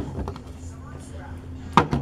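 Plastic screw-top lid of a pet food storage bin being twisted open, with one sharp click near the end.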